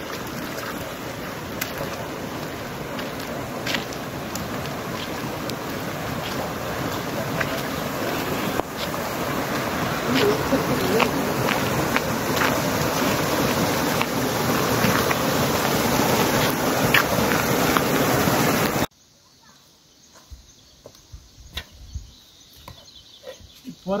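Steady rain falling, an even hiss with scattered sharp ticks, growing slightly louder; it cuts off abruptly about five seconds before the end, leaving a quiet outdoor backdrop with a few faint knocks.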